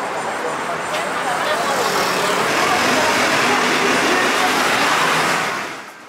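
City street traffic noise, building over the first two or three seconds as a bus passes close, then holding steady and fading out near the end. Faint voices are mixed in.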